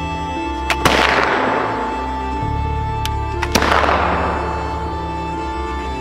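Two flintlock muzzleloader rifle shots about three seconds apart. Each begins with a short click from the lock and a split second later a loud crack that dies away over about a second. Steady background music plays underneath.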